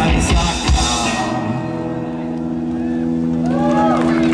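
Live rock band with drums and electric guitars: a few last drum hits in the first second, then a held chord rings on steadily as the song comes to its end, with a few short sliding pitches near the end.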